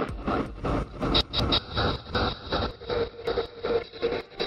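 Fast tekno (free party techno) track: a driving, evenly spaced beat at about three hits a second under dense, noisy synth layers.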